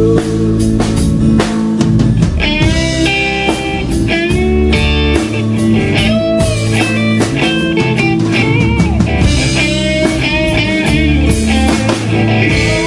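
Live rock band playing an instrumental break: electric guitar lead with bending, sliding notes over bass guitar and drum kit.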